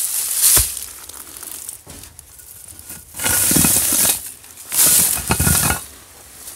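Dry leaves, twigs and rubble crunching loudly underfoot in three separate bursts, with a dull thump at the end of the first.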